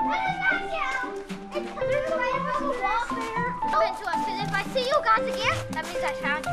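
Children's high voices shouting and calling out excitedly during a game, over background music with held, steady notes.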